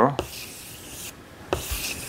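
Chalk rubbing on a chalkboard as circles are drawn: one stroke lasting about a second, a short pause, then a second stroke starting about a second and a half in.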